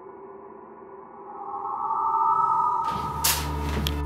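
Ambient electronic music from a theatre sound design: faint held tones, then a higher tone swelling in about a second in. Near the end a low steady drone and a hiss enter suddenly and louder.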